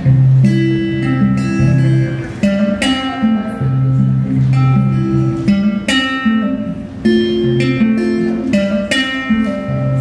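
Solo steel-string acoustic guitar picking chords and single notes over ringing bass notes, the instrumental opening of a song before the vocal comes in.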